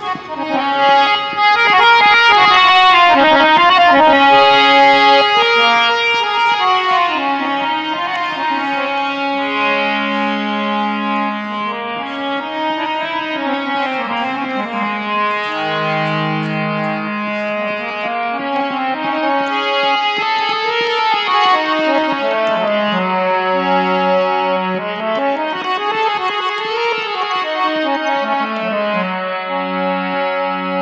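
Harmonium played solo as an instrumental introduction: a melody of held notes over chords, moving up and down in pitch, with no singing.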